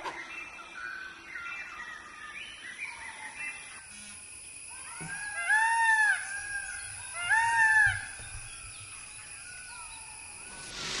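Indian peafowl calling twice, about a second and a half apart; each call is a loud arched cry that rises and falls. Before them come many short, high chirping whistles.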